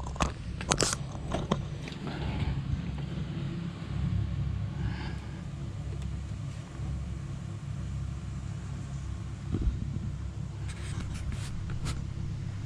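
A steady low rumble on the microphone, with sharp clicks and knocks in the first second or two as the camera is handled on a wooden table, and a few more near the end.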